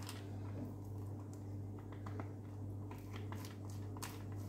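Faint scraping and light clicks of a metal spoon pressing a sticky kunafa, nut and caramel filling into a silicone mould, over a steady low hum.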